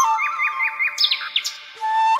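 Bird chirps in a lull in flute music: four quick rising chirps, then two sharp high upward-sweeping calls, before the flute melody comes back in near the end.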